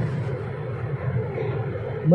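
Steady background noise: an even hiss and rumble with no distinct events.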